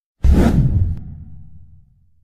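A whoosh sound effect for a logo reveal. It starts sharply about a fifth of a second in and fades over about a second and a half, leaving a low tail that dies away.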